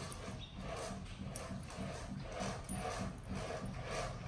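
Baby macaque whimpering softly in a quick, even series of short calls, about four or five a second.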